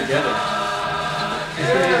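Recorded choir music playing from a loudspeaker in the room, the voices holding long, steady notes.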